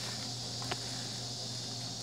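Steady background noise: a low hum and a high hiss, with one faint click about a third of the way in.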